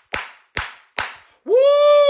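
A man clapping his hands in a steady rhythm, three claps a little under half a second apart. About a second and a half in, he breaks into a long, drawn-out vocal exclamation that rises, holds and falls.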